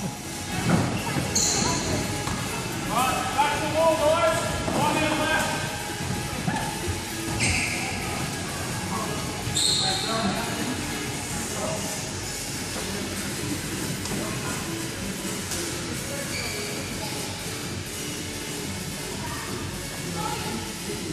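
Indistinct voices of bubble soccer players calling out in a large, echoing indoor sports hall, busiest in the first several seconds, with a few short high squeaks and music in the background.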